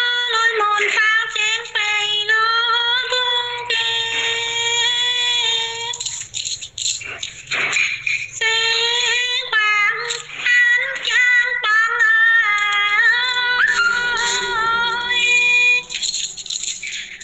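A woman singing an unaccompanied folk song in long, high, held notes, heard through a phone voice message. There is a pause of about two seconds near the middle.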